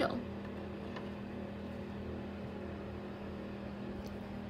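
A steady low hum with one even tone, unchanging throughout.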